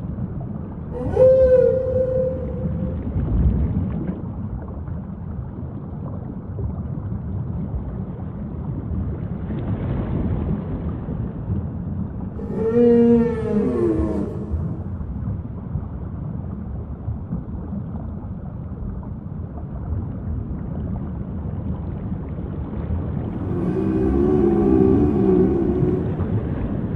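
Whale calls over a steady rushing water noise: three separate moaning calls, one about a second in that rises then holds its pitch, one midway that falls in pitch, and a longer wavering one near the end.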